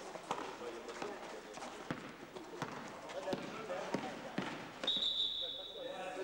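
Basketball bouncing on a gym floor with voices in the hall, then a referee's whistle blown in one steady blast about five seconds in, signalling a stop in play.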